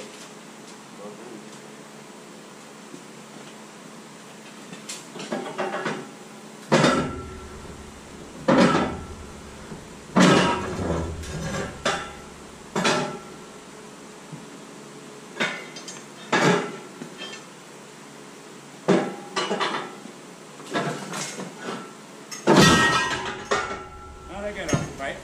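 Irregular metal-on-metal clanks and bangs, about a dozen strikes each with a short ring, from steel bars and pipe rollers working a heavy cast-iron lathe off onto a skate. The first few seconds hold only a steady background; the strikes begin about five seconds in, and the heaviest bangs come near the start of the strikes and near the end.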